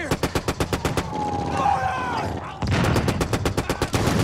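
Rapid machine-gun fire in a war film's soundtrack, about ten shots a second: a burst lasting about a second, then a man's voice, then a second burst starting near three-quarters of the way through.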